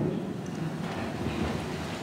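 Steady low background noise in a large church between spoken prayers, with no distinct event.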